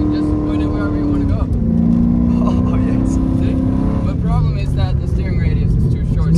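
First-generation Ford GT's supercharged 5.4-litre V8 heard from inside the cabin, under load. Its pitch holds, drops about a second and a half in, climbs slowly, then drops again near the four-second mark.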